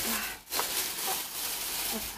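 Plastic bags rustling and crinkling as a cat litter tray filled with pellet litter is handled and lifted out of them, with faint voices in the background.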